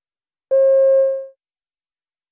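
A single electronic beep: one steady mid-pitched tone, a little under a second long, that fades out. It is the cue tone marking the start of a listening-test recording extract.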